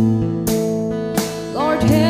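Live band music led by an electric bass holding low notes under sustained chords, with sharp hits at irregular intervals. A voice comes in singing near the end.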